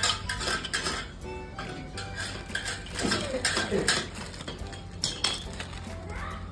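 Hard, crisp peanut brittle discs clinking and clattering against one another as they are gathered and stacked. There is a quick run of sharp clinks at first, then scattered ones.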